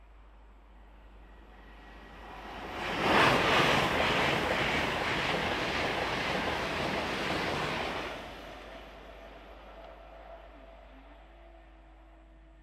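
An LNER Azuma high-speed train passing close by at speed. Its rushing noise swells from about two seconds in, is loudest for about five seconds as the train goes by, then dies away.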